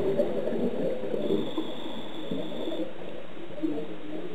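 Scuba diver's exhaled bubbles burbling from the regulator, heard underwater through the camera housing; the exhalation fades over the first couple of seconds, with a faint thin whistle in the middle.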